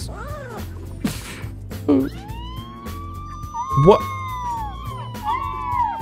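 A group of puppies howling together: several long, overlapping howls that rise and fall, starting about two seconds in. The howling may be a response to a siren.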